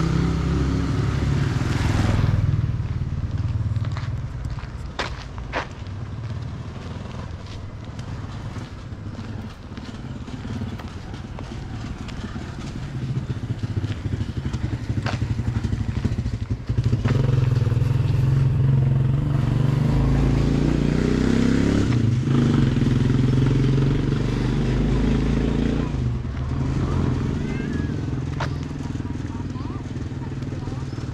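Street sounds of a residential lane: a motorcycle engine running as it passes in the first couple of seconds, then a louder vehicle engine from about seventeen seconds in until about twenty-six seconds, with people talking.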